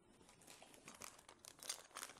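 Faint crinkling of a clear plastic bag holding metal mounting brackets as it is handled and lifted out of a cardboard box, in irregular crackles that grow louder toward the end.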